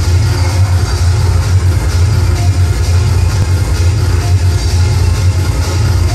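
Electronic dance music with a heavy, steady bass beat.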